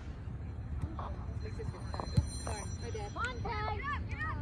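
A single sharp thud of a soccer ball being kicked about two seconds in, over open-field ambience; from about three seconds in, several voices on and around the pitch shout and call out.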